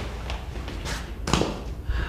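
A few footsteps on a hard tiled floor, then a dull thump about a second and a half in as a travel bag is set down on the floor.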